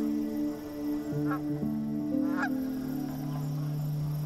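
Canada geese honking twice, over background music of held chords.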